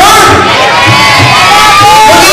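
Loud audience cheering and shouting, many voices at once.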